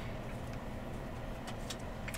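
A low steady background hum as cards are slid across one another in the hands, with a couple of faint soft clicks about one and a half seconds in.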